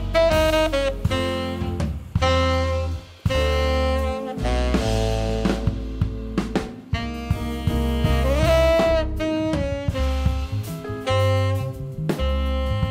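Live jazz band: tenor saxophone playing the melody over electric bass, keyboards and drum kit, with a saxophone note bending upward a little past the middle. The tune is built on the notes of a mourning dove's call.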